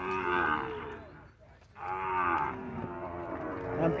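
Young zebu cattle in a crowded pen mooing: one call lasting about a second at the start, then a second call about two seconds in.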